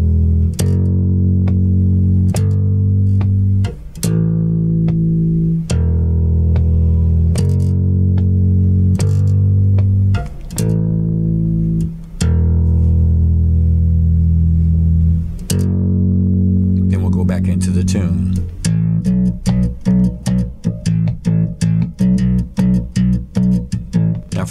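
Four-string electric bass playing a riff on the low E string: open, 2nd, 3rd and 5th fret, in standard E-A-D-G tuning. Long held notes change every second or two, then from about two-thirds of the way in it switches to quick, short, repeated notes.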